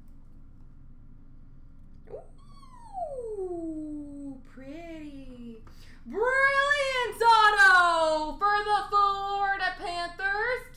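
A person's voice singing wordlessly in a high pitch: a long downward-sliding note from about two seconds in, then from about six seconds a louder, held, sliding phrase that breaks into short notes near the end.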